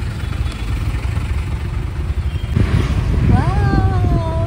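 Auto-rickshaw's small engine running with a low, steady rumble, heard from inside the open passenger cabin in traffic; it grows louder about two and a half seconds in.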